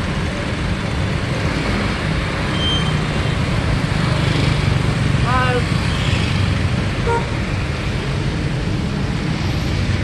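Steady road traffic noise: engines of cars and small trucks running in slow, congested city traffic. A short pitched sound, a horn or a voice, rises above it about halfway through.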